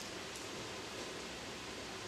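Steady background hiss of room noise in a large hall, with no distinct sound events.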